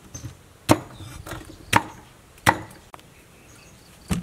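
Knife chopping ears of corn into pieces on a chopping block: three sharp chops about a second apart, with a few lighter knocks between.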